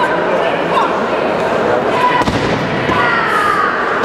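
Ju-jitsu competitor thrown onto the competition mat, landing with a single heavy thud about two seconds in, over steady chatter in a large sports hall. A raised voice calls out shortly after the landing.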